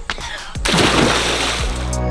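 A child jumping feet-first into a swimming pool: one splash about half a second in, lasting about a second. Background music plays throughout.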